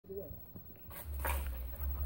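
A brief animal-like cry at the very start, then about a second of low rumble and hiss from wind buffeting the microphone, the loudest part.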